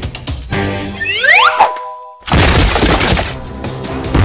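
Cartoon sound effects over background music: a run of rising whistling glides about a second in, a short pause, then a sudden loud crash of breaking bricks a little past two seconds, fading away.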